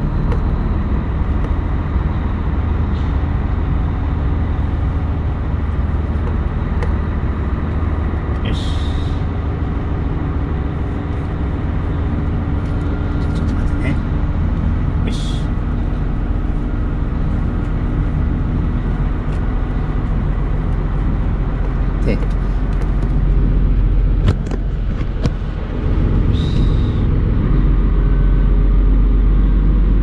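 A tractor-trailer truck's diesel engine running at low speed, heard from inside the cab while manoeuvring, with three short sharp hisses of compressed air, typical of the air brakes. It gets somewhat louder in the last few seconds.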